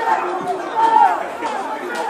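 Several voices talking and calling out at once, with no clear words: chatter of spectators and players around a football pitch.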